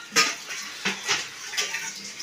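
Steel utensils clinking and clattering against each other in the sink as they are washed by hand: a sharp clank just after the start, then a few lighter knocks.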